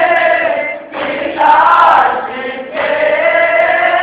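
Group of men chanting a nauha, a Shia lament for Ali Akbar, in unison and without instruments. It is sung in long held phrases, with short breaks about a second in and near three seconds.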